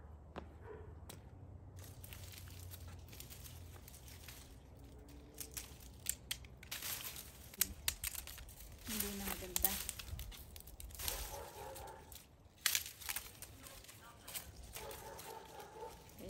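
Dry, wilting hyacinth bean (bataw) vine leaves and stems rustling and crackling as they are handled and trimmed, with irregular snaps and crinkles.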